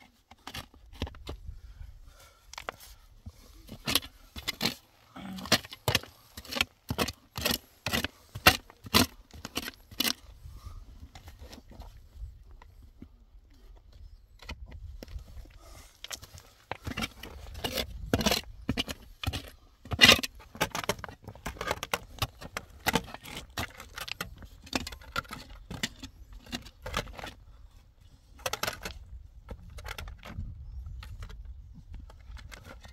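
A short-handled metal shovel digging into stony soil in a narrow hole: a run of sharp scrapes and clinks as the blade strikes stones and scoops out earth, coming in two busy spells.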